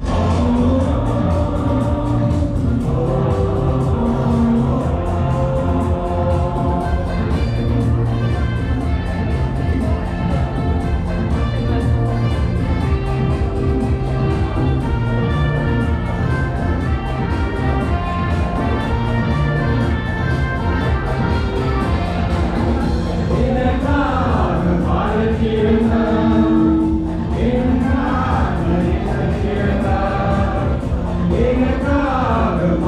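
A small group of men and women singing a song together into microphones over amplified backing music with a bass line, played live through a hall's PA speakers.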